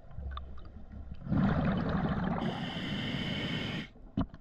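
Scuba diver breathing through a regulator underwater: a loud rush of exhaled bubbles starts about a second in, a hiss joins it partway through, and both stop abruptly about two and a half seconds later.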